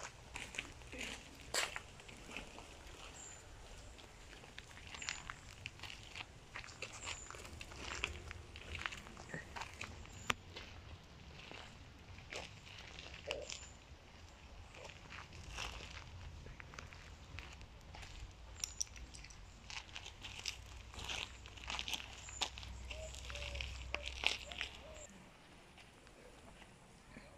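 Footsteps crunching on gravel, an irregular run of short crunches and clicks over a low rumble that grows stronger in the second half.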